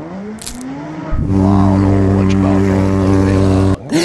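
Cartoon sound effect of a jet ski engine: a loud, steady motor drone that starts about a second in and cuts off suddenly near the end.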